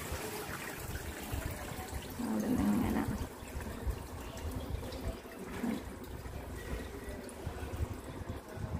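Water trickling and dripping inside a Bosch dishwasher whose door has been opened mid-cycle, so the wash has paused.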